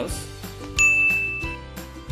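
A single bright ding sound effect, one clear high tone that starts sharply about a second in and rings for under a second, over background music.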